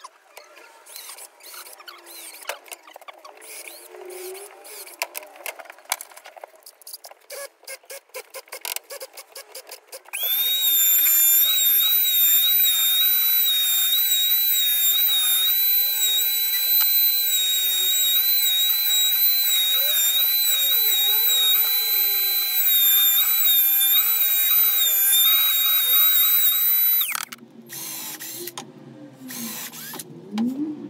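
Compact trim router running at full speed as a piece of wood is fed past the bit: a loud, steady high whine whose pitch dips slightly under load, starting about a third of the way in and stopping abruptly near the end. Before it starts there is irregular clicking and knocking.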